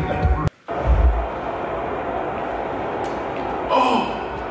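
Basketball video game audio playing from a TV: a steady, even wash of game sound. It drops out to silence for a moment about half a second in, and a short louder patch comes in near the end.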